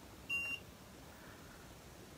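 A single short, high electronic beep, about a quarter of a second long, a fraction of a second in.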